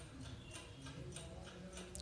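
Faint, steady ticking, a countdown-style tick that marks the pause left for thinking before a quiz answer is given.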